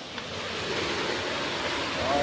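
Small waterfall and rocky stream rushing steadily: an even noise of falling water.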